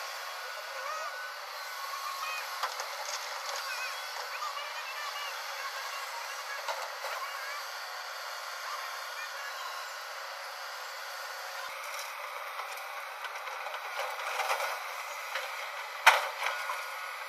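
JCB tracked excavator at work: a steady, thin hiss of engine and hydraulics with no low rumble, growing louder briefly near the end.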